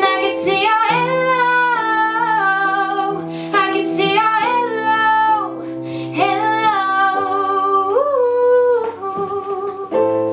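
Pop song: a lead vocal sings long, gliding notes over held chords and bass, with the chords changing a few times.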